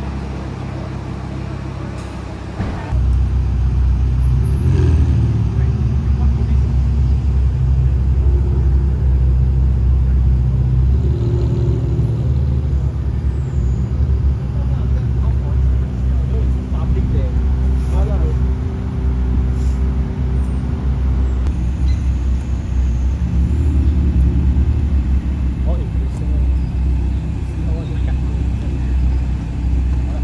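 Car engines running at low revs in slow street traffic: a loud, deep, steady rumble that rises and falls a little now and then. People talk over it. The rumble grows much louder about three seconds in.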